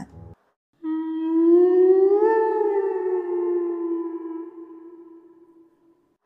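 An eerie sustained tone, a horror transition sound effect: it starts about a second in, swells and bends slightly up in pitch, then sinks back and slowly fades out.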